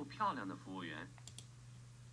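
A voice speaking that stops about a second in, followed by two quick computer mouse clicks. A low steady hum runs underneath.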